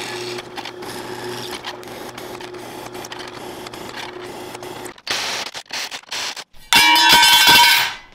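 A drill press running steadily while its bit cuts holes through a metal plate. After about five seconds this gives way to a few short bursts, then a louder, harsher stretch of machining noise near the end.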